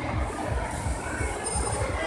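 Mall escalator running, a steady low mechanical rumble of the moving steps with a faint high squeal briefly near the end.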